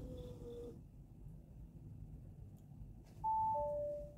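Bentley Continental GT's in-cabin electronic chime sounding two clean notes near the end, a higher note followed by a lower one, over a faint low steady hum.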